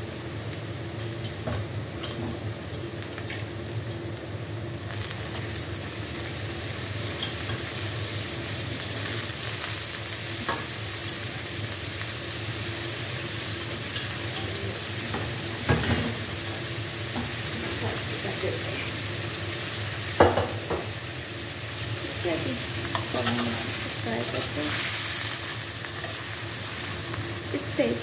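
Goat meat and browned onions frying in hot oil in a metal karahi, sizzling steadily, stirred with a slotted metal spatula that scrapes and knocks against the pan a few times.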